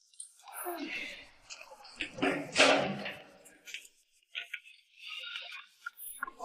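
A person speaking, in two stretches: a longer one through the first half and a shorter one near the end.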